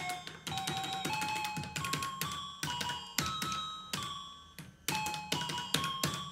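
Electronic bet beeps from a fruit-symbol slot machine as credits are placed on its symbols one at a time: a quick run of short tones, each at a different stepped pitch, about three a second.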